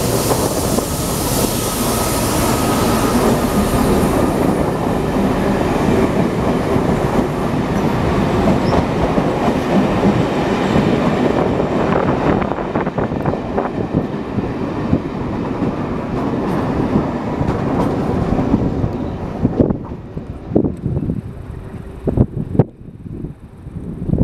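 A Class 68 diesel-electric locomotive, with its Caterpillar V16 engine, passes close by under power, followed by a rake of coaches rolling past in a steady loud rumble with wheels clattering over rail joints. About two-thirds of the way through, the rumble drops away and separate sharp clacks of wheels over the joints and points are heard.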